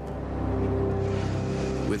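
A steady low droning hum with a held tone, even in level.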